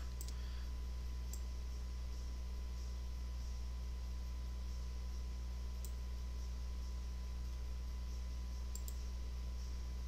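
A few faint, widely spaced computer mouse clicks over a steady low hum.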